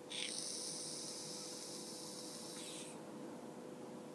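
An e-cigarette firing as a puff is drawn through it: a steady high hiss lasting nearly three seconds that cuts off suddenly.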